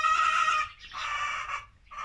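A chicken calling in the pen: one drawn-out call ending a little way in, then a second shorter call about a second in.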